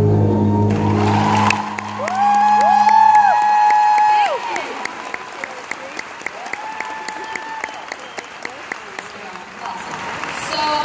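A song for voice and acoustic guitar ends on a held chord that rings out, then a large audience applauds and cheers, with loud whistles. The applause thins out after about four seconds.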